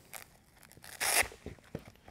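Velcro (hook-and-loop) strap on a fabric training sleeve ripped open in one short burst about a second in.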